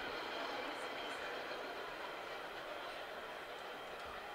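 MBTA Orange Line subway train passing, a steady rumble and hiss with faint high steady tones that slowly fades.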